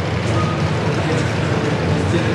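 Demolition derby car engines running during a heat, a dense, steady din echoing through an indoor arena.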